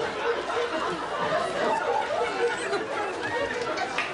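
Many children's voices chattering and talking over one another, with no single voice standing out.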